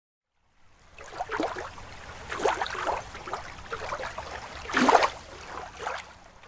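Water splashing and trickling, with louder splashes about a second and a half in, at two and a half seconds, and loudest near five seconds.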